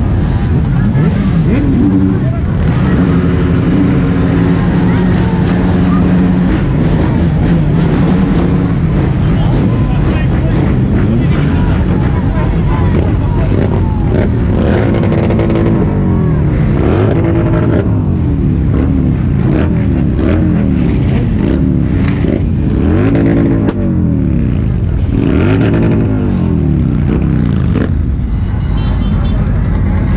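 Several stationary motorcycle and scooter engines running and being revved. Steady idle in the first part, then repeated throttle blips rising and falling in pitch, overlapping, through most of the second half, with crowd chatter underneath.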